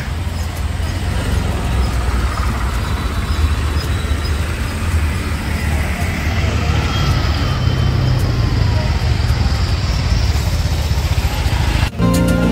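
Busy city street traffic: a steady low rumble of car and auto-rickshaw engines moving slowly past, with a general street hubbub.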